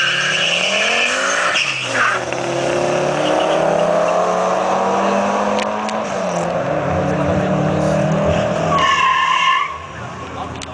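A Fiat Marea Turbo and a turbocharged Honda Civic coupe launching off the drag-strip start line and accelerating hard, engine pitch climbing through the gears.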